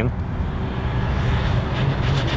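A motor running steadily: a low, even hum under a noisy haze, with no revving.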